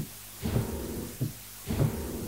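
Roland LX706 digital piano playing its simulated damper-pedal sound as the pedal is pressed twice. Each press gives a soft thump and a low wash of sound, the modelled noise of the dampers (mutes) lifting off the strings of an acoustic piano.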